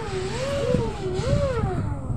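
A voice making a motor noise for a toy motorbike: one continuous hum that wavers up and down in pitch about three times, over a low rumble.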